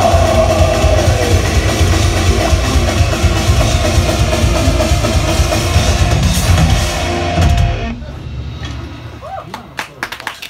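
Heavy metal band playing live, with drum kit, distorted guitars and a long held note. The band ends the song together about eight seconds in and the sound rings out and fades.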